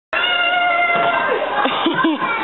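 A high-pitched voice starts suddenly and holds one steady note for about a second, then breaks into short, bending vocal sounds.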